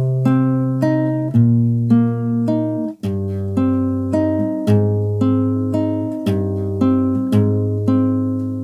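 Classical guitar fingerpicked: the intro pattern over a C minor barre chord, thumb playing bass notes on the fifth and sixth strings while index and middle fingers pluck the third and second strings. About two notes a second, each left ringing, with the bass note stepping every second or so.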